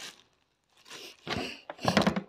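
A person with a head cold sniffling: three short noisy sniffs about half a second apart, the last the loudest.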